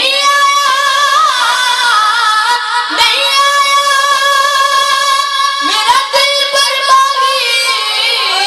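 A boy singing a Punjabi naat solo into a microphone, in long held notes with a wavering pitch, breaking briefly about three seconds in and again near six seconds.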